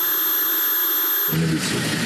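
A loud, steady hiss of white noise with its low end cut away, like an editing noise burst laid over the sound track, ending abruptly a little over a second in. A man's voice follows.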